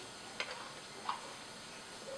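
Two faint clicks as a USB cable's plug is pushed into the Arduino Uno's USB socket, over quiet room tone.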